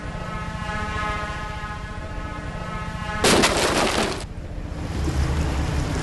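Drone's propellers humming steadily, then a loud clattering crash about three seconds in as the drone is deliberately crash-landed into the boat, after which the hum stops.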